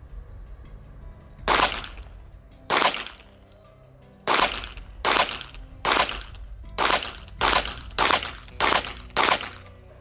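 A 9mm Walther PDP pistol fired about ten times to empty the magazine. Two shots come more than a second apart, then after a short pause a quicker string of roughly two shots a second, each a sharp crack with a brief ringing tail.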